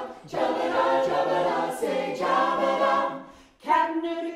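Mixed-voice a cappella group singing in harmony without instruments. The sung phrase fades away about three and a half seconds in, and the next phrase enters strongly just after.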